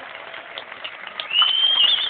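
Concert audience noise, then a loud, high whistle from the crowd a little past halfway. The whistle rises slightly and wavers as it ends, and lasts under a second.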